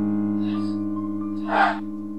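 Paravox ghost box app output: short breathy bursts of noise, a faint one about half a second in and a louder one near the end, over sustained piano-like chords.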